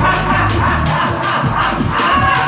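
Live gospel praise-break music played loud in a church, with a fast, steady beat over a running bass line.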